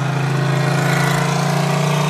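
Car engine heard from inside the cabin while driving: a steady drone whose pitch rises slightly as the car gently picks up speed.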